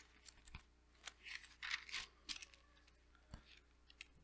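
Faint rustling and light clicks of thin Bible pages being turned by hand, with two soft low thumps.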